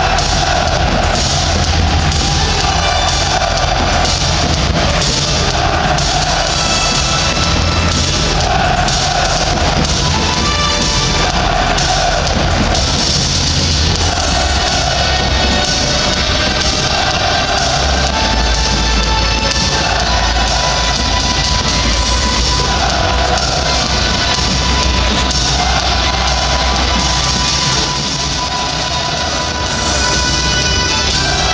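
Loud music over a football stadium's sound system for the players' entrance, mixed with the noise of a large crowd of supporters, running steadily with a phrase repeating every couple of seconds.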